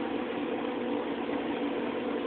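Steady background hum and hiss, unchanging throughout.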